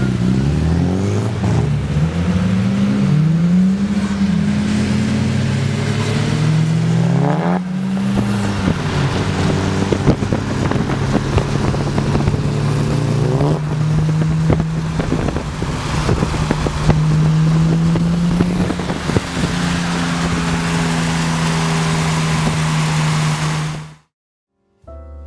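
Car engine revving: the pitch swings up and down several times in quick succession as the car pulls away sideways on the wet road, then settles into a long, steady, high-revving note while running at speed.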